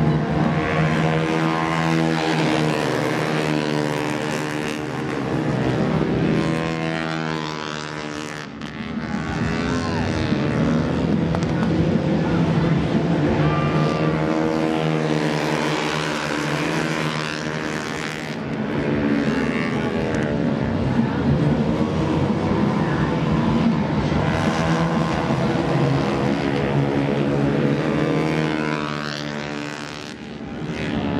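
Racing motorcycle engines at high revs, their pitch climbing and dropping again and again as the bikes accelerate, shift and pass.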